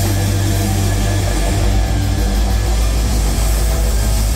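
Live hard-rock band playing loud, with distorted electric guitar and bass holding a steady, low, rumbling drone.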